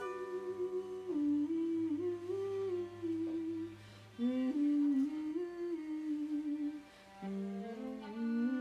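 Wordless human humming of a slow melody that moves by small steps, in phrases of about three seconds with brief breaks between them, over a low held note in the first half.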